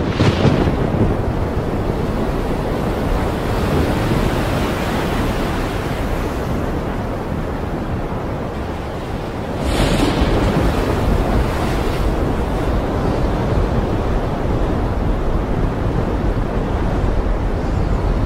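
Steady rushing noise like wind or surf, swelling suddenly at the start and again about ten seconds in.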